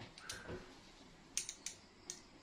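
Three quick, faint metallic clicks a little past the middle, from a pair of Vise-Grip locking pliers being handled and turned over in the hand.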